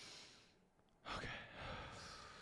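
A man's breathy sigh, then a quiet "okay" about a second in that trails into another long breath out, as he breathes through the sting of having his eyebrows plucked.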